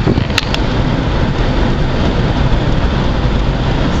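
Steady road and engine noise inside a vehicle's cabin while driving on the highway, with two short clicks about half a second in.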